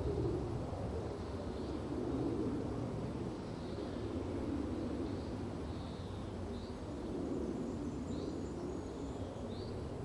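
Steady low background noise, with faint short high chirps every second or two over it.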